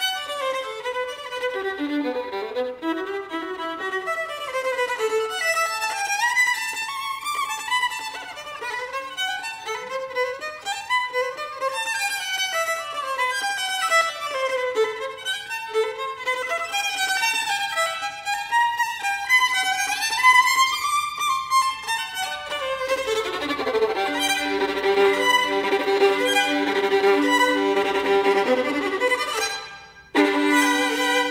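Violin playing a folk-song melody in quick, flowing phrases, then settling into longer held notes for the last several seconds. The playing breaks off sharply at the very end.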